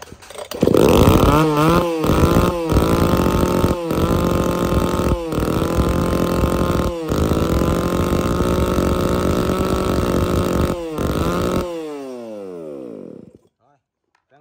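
Tanaka 300 two-stroke chainsaw pull-started, catching at once with a short rev, then running steadily with several brief dips. About eleven and a half seconds in it is switched off and winds down, its pitch falling.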